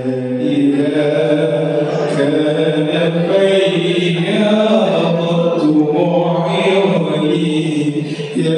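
A man singing a sholawat, an Islamic devotional chant in praise of the Prophet, unaccompanied. He draws it out in long melismatic notes that bend in pitch.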